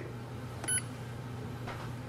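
A single short electronic beep from the Canon Pixma TR4720 printer's control panel, about two-thirds of a second in, as its OK button is pressed to confirm the menu selection. A low steady hum runs underneath.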